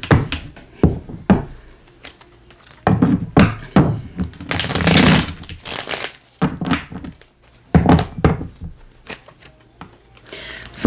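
Tarot cards being handled and shuffled on a table: irregular thunks and taps of the deck against the tabletop, with short rustling bursts of cards sliding together.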